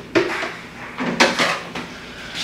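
Containers and jars being moved around inside a refrigerator: two sharp knocks, one just after the start and one about a second in, with light rattling between.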